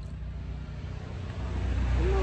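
Low engine rumble from a motor vehicle, a steady hum that grows louder about a second and a half in, as if the vehicle is approaching.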